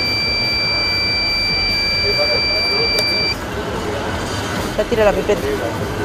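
Dräger handheld breathalyzer sounding one steady high-pitched tone while a driver blows into its mouthpiece; the tone cuts off about three seconds in. Street traffic noise and faint voices continue underneath.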